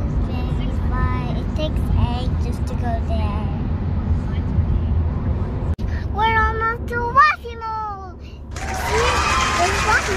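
A young child's high-pitched voice talking, over the low, steady road rumble inside a moving car. A burst of hiss comes in near the end.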